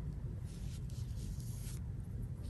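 Faint, soft swishes of a Chinese painting brush stroking across xuan paper, over a steady low hum.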